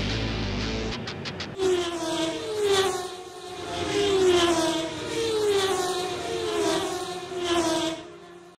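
Racing cars passing at speed one after another, each engine note falling in pitch as it goes by, over background music.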